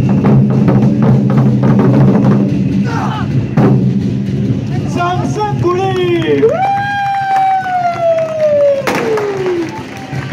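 Large Chinese barrel drums (tanggu) beaten hard in a fast ensemble rhythm for about the first four seconds. Then the drumming stops and a voice gives a long, drawn-out call that slowly falls in pitch. A single loud hit comes near the end.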